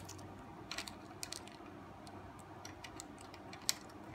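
Small plastic clicks and taps from opening the USB port cover on a Dodge MyGig radio's faceplate and fitting a thumb drive, scattered irregularly, with one sharper click near the end.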